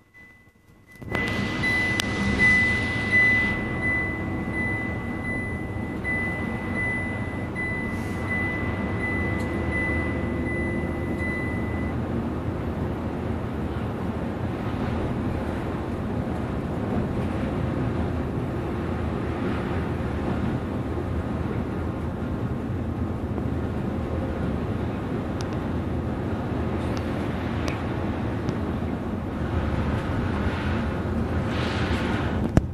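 Steady cabin drone of an express coach cruising on the expressway, engine and tyre noise heard from the front of the bus, starting abruptly about a second in. A thin, evenly pulsing high tone runs over it for roughly the first ten seconds.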